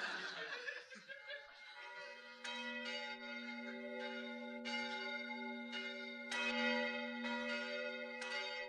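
Bells ringing in the New Year: from about two seconds in, several strikes over a deep, steady, sustained ringing.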